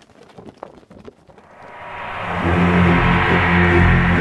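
Faint scattered clicks, then soundtrack music swelling in from about halfway through and building to loud, sustained low chords.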